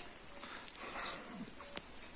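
Faint outdoor ambience with a few scattered bird chirps and a single sharp click near the end.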